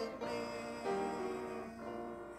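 Keyboard instrument playing slow, held chords, moving to a new chord about every second.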